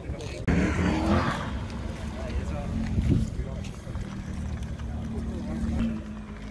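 Car engine revving hard with a sudden loud burst about half a second in, then running on steadily at low revs.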